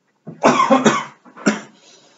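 A person coughing loudly: a long coughing burst lasting most of a second, then one shorter cough.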